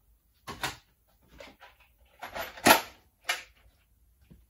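Several separate knocks and clatters of tools and metal objects being handled, the loudest a sharp knock a little under three seconds in.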